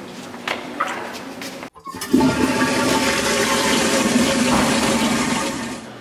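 Toilet flushing: a loud rush of water begins about two seconds in and fades away near the end. Before it comes a shorter, quieter stretch of noise that breaks off sharply.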